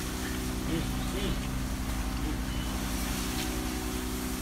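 A motor or engine running steadily, a constant droning hum with a fast low pulse.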